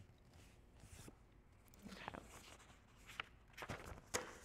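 Faint rustling of paper sheets being handled and shuffled, with a few soft taps and clicks in the second half.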